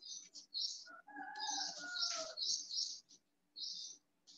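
Birds chirping: a string of short high chirps, with a longer wavering call falling slightly in pitch between about one and two seconds in.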